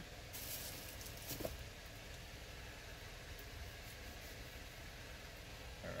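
Faint steady low hum of background noise, with a brief soft hiss and a single faint click about a second in.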